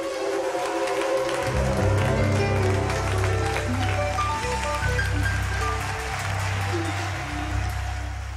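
Live gospel band playing the song's closing instrumental: organ runs over a deep, held bass that comes in about a second and a half in, with cymbal strikes throughout.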